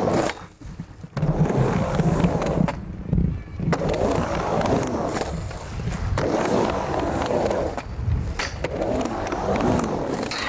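Skateboard wheels rolling on a plywood ramp, a steady rumble that swells and fades with each pass across the transitions. The rumble drops out briefly about half a second in and again around three seconds.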